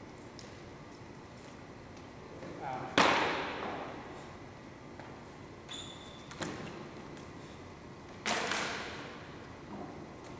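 Steel training swords clashing while sparring: two loud, sharp strikes, about three seconds and about eight seconds in, each ringing out in the gym's echo. Between them comes a lighter metallic tick with a brief high ring.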